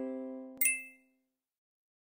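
The last chord of a music jingle fading out, then about half a second in a single short, bright ding sound effect.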